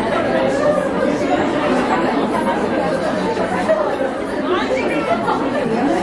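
Steady background chatter of many people talking at once in a busy café, with no single voice standing out.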